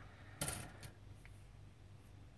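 A grey plastic model-kit sprue set down on a cutting mat: a short plastic clatter about half a second in, followed by two light clicks.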